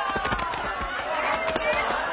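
Several voices talking over one another, with a series of sharp knocks or cracks scattered through.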